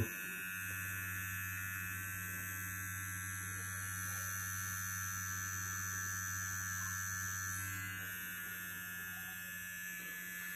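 Manscaped Lawn Mower 3.0 cordless electric trimmer running, a steady buzz from its blade motor, quieter than some trimmers. It eases slightly softer about eight seconds in.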